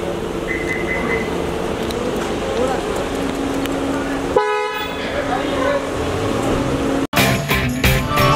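Car horns held in long steady notes over the chatter of voices around a car pulling away. About seven seconds in, the sound cuts off abruptly and a music jingle begins.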